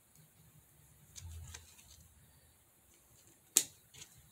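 Scissors cutting the tag string off a plush blanket: faint clicks and handling noise about a second in, then one sharp snip near the end.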